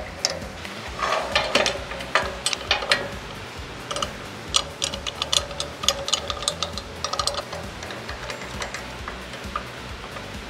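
Irregular knocks and clicks, busiest about one to three seconds in and again from about four to seven seconds: a heavy wooden slab being shifted on the steel bed of a slab flattener and its bed clamps being set. Background music runs underneath.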